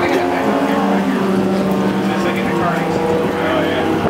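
Race car engine idling steadily, heard from inside the cockpit.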